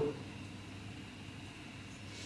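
Quiet room tone: a faint steady hum and hiss with no distinct sound.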